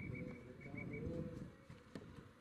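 Low rumble of a Peugeot van driving slowly up. A rapid string of short, high chirps runs over it and stops about halfway through.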